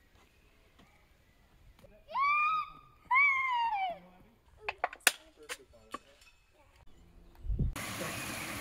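A child's high-pitched voice calls out twice, about two and three seconds in, followed by a few sharp clicks. Just before the end the sound changes to the steady rush of a small waterfall.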